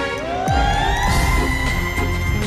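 A male singer's high wordless falsetto note that glides upward and is then held steady, over live pop backing music. A heavy bass beat comes in about half a second in.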